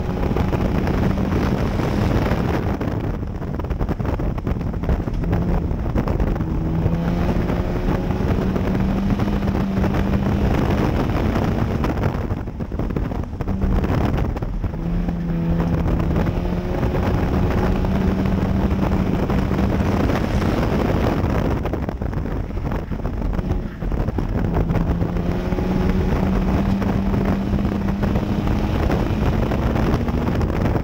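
A front-wheel-drive dirt track race car's engine, heard from inside the cockpit, running hard down the straights. It backs off three times, about nine to ten seconds apart, as the car lifts for the turns, then pulls back up. Wind and road noise rush through the cabin.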